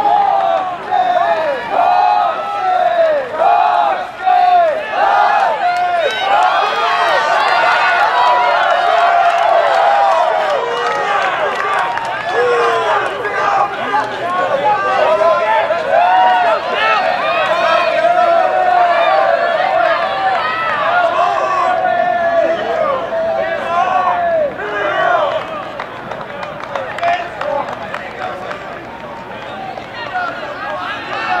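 Trackside spectators shouting and cheering at distance runners as the pack goes by, many voices overlapping and yelling at once; the shouting dies down in the last few seconds.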